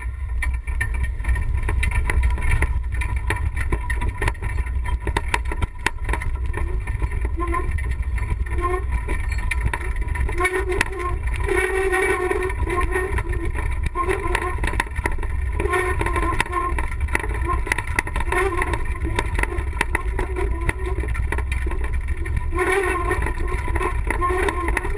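All-terrain wheelchair rolling down a rough gravel track: a steady low rumble with frequent knocks and rattles of the frame over stones, picked up by a camera riding on it.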